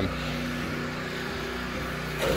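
Steady machine hum, like a motor or engine running, with a few held low tones.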